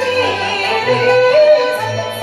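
Yue opera singing: one voice sustains ornamented notes with a wavering vibrato over a traditional instrumental accompaniment with a moving bass line.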